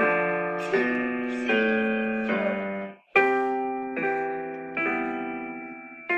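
Teacher and student playing a four-hands piano duet on a digital keyboard: chords struck about every three-quarters of a second, each held and fading, with a brief break about three seconds in before the playing resumes.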